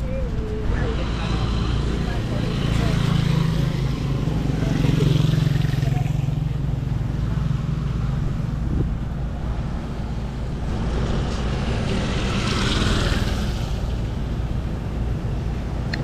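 Boxer-twin motorcycle engine idling steadily while the bike stands still, a low even rumble that swells a little a few seconds in.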